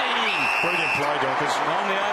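Football stadium crowd shouting and cheering, with an umpire's whistle blown once near the start: a single steady high tone lasting under a second.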